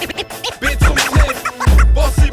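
Hip hop beat with turntable scratching: quick, repeated scratch glides over a heavy kick drum.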